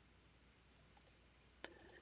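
Near silence, broken by a few faint clicks: two about a second in and a few more near the end.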